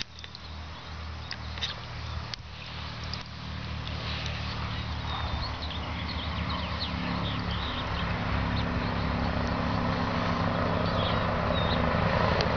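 A big truck on a nearby highway approaching, its engine drone growing steadily louder, with a few faint small splashes of water from a lynx's paws in a tub.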